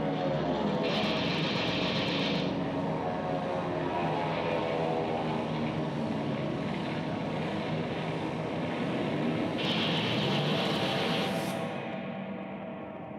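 A steady, droning engine-like sound, like propeller aircraft overhead, its pitch gliding slowly. Two short bursts of hiss come through it, about a second in and again near the end.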